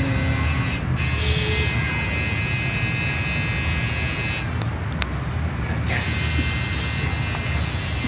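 Electric tattoo machine buzzing steadily as the needle works. It stops briefly about a second in, and again for about a second and a half just past the middle.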